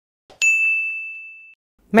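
A single bright bell ding sound effect, a notification bell for a subscribe-button animation. It follows a faint click and rings one clear tone that fades out over about a second.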